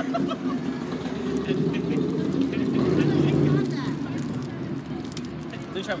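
A passing road vehicle's low rumble that swells to its loudest midway and then fades, under faint background voices.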